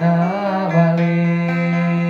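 Male voice singing a rejung song over a plucked acoustic guitar in South Sumatran gitar tunggal style. The voice comes in with a short wavering ornament, then holds one long steady note.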